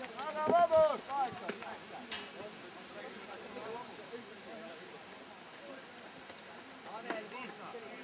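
A loud voice calls out in the first second and a half, then the track goes quiet apart from one short click about two seconds in and faint talk near the end.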